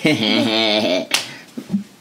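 Laughter with a wavering pitch for about a second, then one sharp snap of hands.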